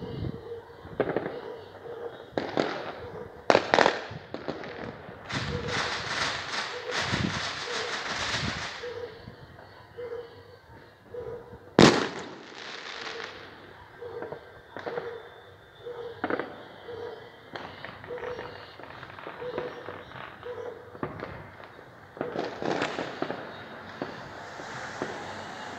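Fireworks going off across the city: scattered sharp bangs, a dense run of crackling about five to eight seconds in, and one loud bang near the middle.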